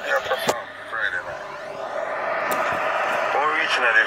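Low talking inside a car cabin, with a rushing noise of traffic that builds over the last two seconds. Two sharp clicks, about half a second and two and a half seconds in.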